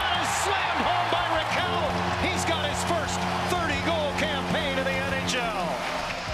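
Arena crowd cheering with whoops and whistles as the home team scores, and a goal horn sounding one long steady blast from about a second and a half in until shortly before the end.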